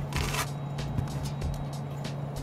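Steady low hum of the space station cabin's ventilation, with a short rustling hiss near the start as water squeezed from a drink bag is worked into wet hair.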